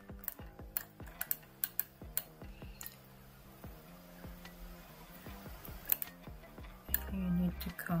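Computer mouse clicking, a run of sharp, irregularly spaced clicks, over soft background music with steady held low notes.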